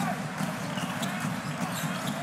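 A basketball being dribbled on a hardwood court, a few irregular bounces over a steady murmur of an arena crowd.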